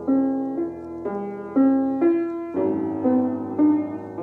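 Upright piano played: a repeating figure of notes struck about twice a second, with a lower bass note coming in just past halfway.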